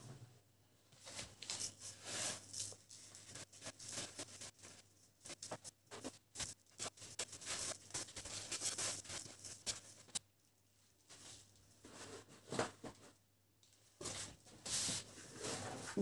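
Faint, irregular crunching and rustling of coarse salt as hands roll and rub slabs of raw pork fat in a heap of salt, with brief lulls between handfuls.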